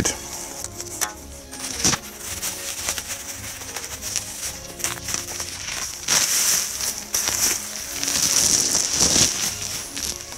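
Plastic bubble wrap crinkling and rustling as an electric guitar is pulled out of it, with a few sharp crackles early on and louder rustling about six seconds in and again from about eight seconds. Faint background music runs underneath.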